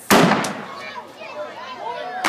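A firework going off with one sharp, loud bang just after the start, its noise dying away over about half a second, followed by voices of people outside.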